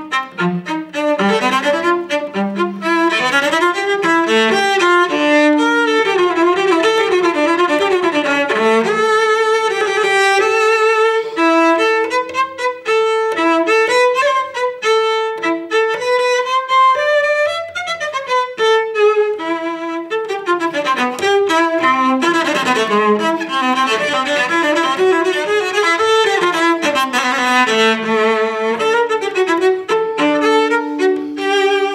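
Solo cello, a 1730 Carlo Tononi strung with Larsen strings, bowed in a lively passage of quick short notes and running figures.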